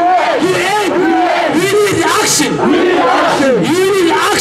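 A man shouting slogans through a megaphone over a crowd, in short, high, rising-and-falling shouts about two a second.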